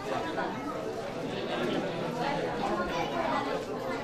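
Many people chatting at once in a hall, a steady murmur of overlapping voices from a seated audience.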